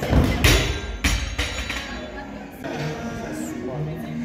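Loaded barbell with rubber bumper plates dropped from overhead onto the lifting platform: a heavy thud at the start, then a second, smaller impact as it bounces about a second in. Background music plays throughout.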